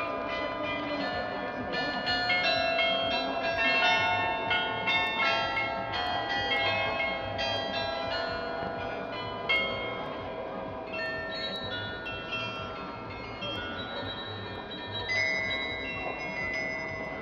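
City hall carillon playing a Christmas melody: many tuned bells struck one after another, each note ringing on under the next. The notes come thick and fast in the first half and are fewer and softer in the second half.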